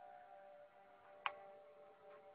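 Near silence with faint steady tones in the background and a single sharp click about a second and a quarter in.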